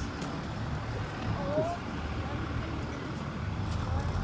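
Street ambience: a steady low rumble of traffic with faint voices, one brief voice-like call about one and a half seconds in.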